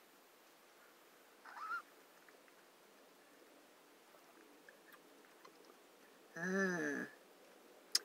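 A quiet car interior with one short high rising squeak about one and a half seconds in. Later comes a woman's closed-mouth hummed "hmm" lasting about half a second, its pitch rising and falling, the murmur of someone tasting a drink.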